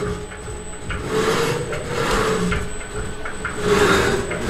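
Arrow 500 CNC vertical mill's servo-driven axes moving through a 3D toolpath at 200 inches per minute, a whine whose pitch rises and falls as the axes change speed. A slight sound from the Z-axis ball screw, which the owner takes for a little backlash.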